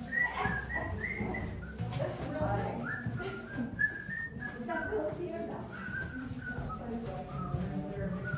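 Someone whistling a tune, one clear pitch moving through a run of short held notes.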